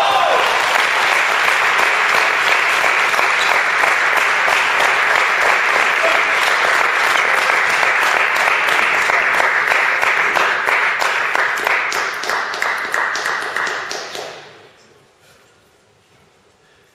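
Audience applause from spectators in the stands, many hands clapping steadily for about fourteen seconds, then dying away.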